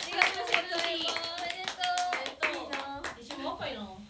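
Several young women clapping their hands, with excited voices over the claps. The clapping dies away near the end.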